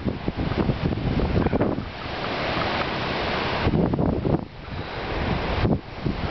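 Gusts of wind buffeting the microphone over the steady rush of ocean surf, the gusts dropping away briefly twice near the end.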